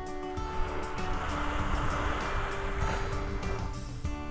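A small surf wave washing up the beach, swelling over about three seconds and then fading, under background music with held notes.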